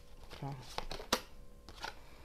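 Tarot cards being handled as a card is drawn and laid on the spread: a few sharp card snaps and a soft rustle of card stock. There is a brief low murmur of voice about half a second in.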